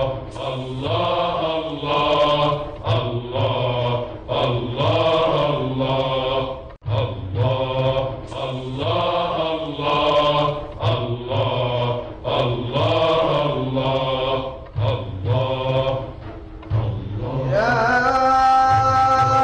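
Male voices chanting an Egyptian Islamic devotional hymn (ibtihal) in Arabic, in long melodic phrases whose melody repeats about seven seconds later. Near the end, instruments with steady held notes come in.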